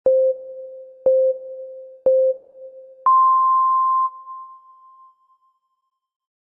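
Electronic countdown beeps: three short, lower beeps a second apart, then one longer, higher beep that fades away.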